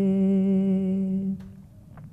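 A man's unaccompanied reciting voice holding the last note of a manqabat line as one long tone with a slight waver. The note stops about a second and a half in, leaving quiet room tone.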